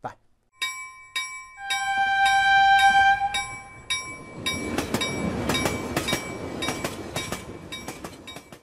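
Train sound effect: a few ringing tones start one after another and hold for a couple of seconds, then a train runs along the rails, rumbling with repeated clacks, and fades out near the end.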